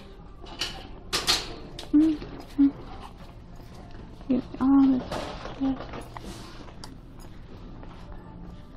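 Handling and rustling noise from a handheld phone being carried, with a few short pitched vocal sounds, like brief hums, from a person. A low steady hum of the shop's background runs underneath.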